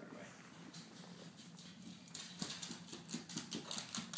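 A Braque Français's claws clicking quickly on a hardwood floor as she runs, starting about halfway in.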